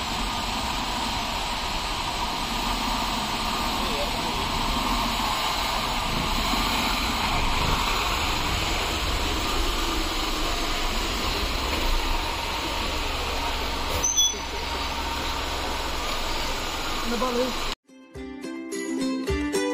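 Small car driving slowly over a rough dirt track: the engine runs with a steady low rumble under the noise of tyres on earth and stones. There is a brief knock about fourteen seconds in.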